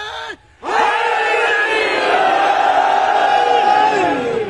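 A single voice ends a long held call, and after a brief pause a large crowd answers with a loud drawn-out shout in unison, sustained for about three seconds before it starts to fade.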